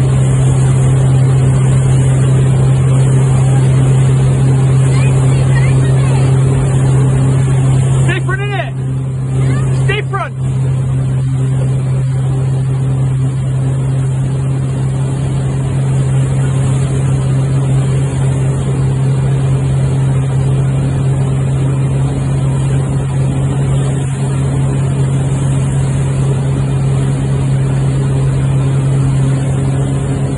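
Wake boat's inboard engine running steadily at surfing speed, a constant low hum under the rush of wind and churning wake water.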